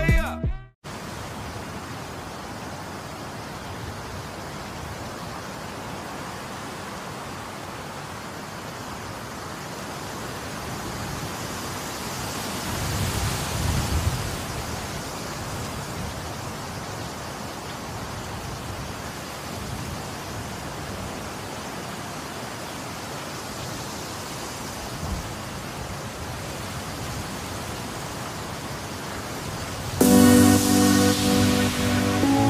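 A steady rushing noise with no pitch, like wind, swelling briefly about 13 seconds in.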